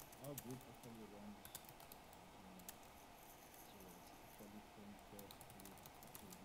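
Typing on a computer keyboard: scattered, faint key clicks, with faint speech coming through the call audio in the background.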